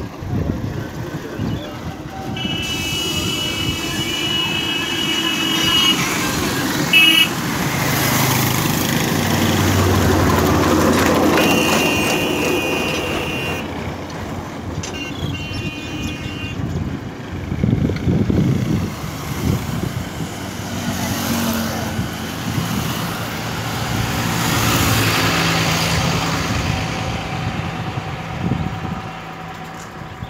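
Highway traffic heard while moving along the road, with wind rumble on the microphone and vehicle engines passing. Horns sound several times in the first half: one long blast starting a few seconds in, then shorter ones.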